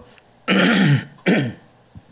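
A man clearing his throat twice: a longer rasping clear, then a shorter one just after.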